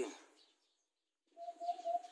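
A pause in outdoor talk. The last word trails off, then there is about a second of dead silence. Faint background noise with a thin steady tone comes back about a second and a half in.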